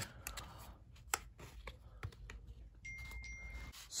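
Faint clicks and rustles of a paperboard Apple Watch band box being handled and opened. A brief steady high tone sounds about three seconds in.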